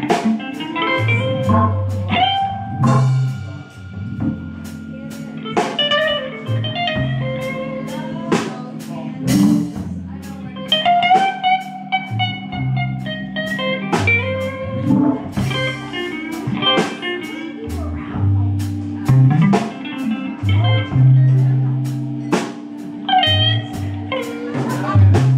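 Live electric blues band playing an instrumental passage: electric guitar lines over a drum kit and long held keyboard chords.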